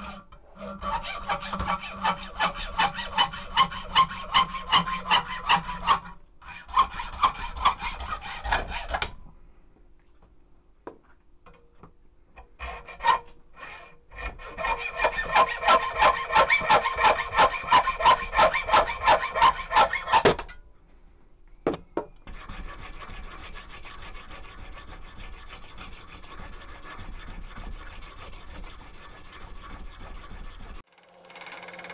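Hacksaw with a brand-new blade cutting through a brass bar clamped in a vise, in quick, even back-and-forth strokes of about two a second. It runs in two long bursts with a short pause between. A quieter, more even sound continues through the last third.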